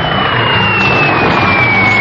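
Loud, steady engine-like rumble with a single high whistle sliding slowly down in pitch.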